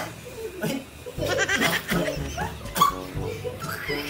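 A man's voice crying out in pain, wavering up and down in pitch, starting about a second in and running on to the end.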